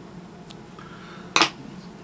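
Fly-tying scissors trimming a CDC feather wing: a faint snip about half a second in, then a louder, sharp metallic snip a little before the end.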